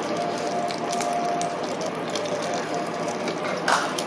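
Close-up eating sounds: chewing of rice vermicelli and raw vegetables making a dense, steady crackle, with one louder wet smack a little before the end.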